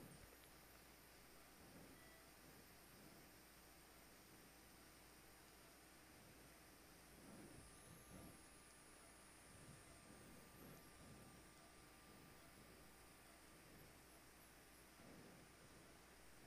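Near silence: a faint steady hiss of room tone.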